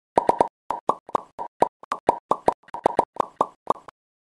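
A rapid, irregular run of about twenty short cartoon pop sound effects, each a brief plop, in an animated logo intro.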